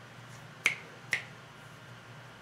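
Two short, sharp clicks about half a second apart, the first louder.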